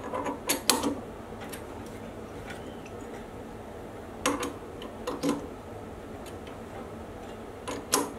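Chuck key adjusting the jaws of an independent four-jaw lathe chuck while a workpiece is dialled in, giving short metallic clicks and clunks in three small clusters: near the start, about four to five seconds in, and at the end.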